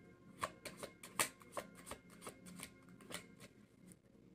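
Faint, irregular light clicks and ticks from hands at the table, about three a second.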